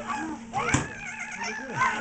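Young children's voices in short whiny cries that rise and fall in pitch, with a thump about three-quarters of a second in.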